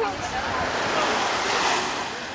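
Wash of small waves on a sandy beach with wind on the microphone, a steady hiss that swells about a second and a half in and then eases.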